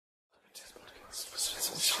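A whispered voice, starting about half a second in after silence and growing louder in short breathy syllables.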